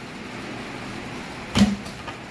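A block of ice in a plastic bag being handled, with rustling plastic, then one sharp knock about one and a half seconds in as the ice is moved toward a plastic water cooler.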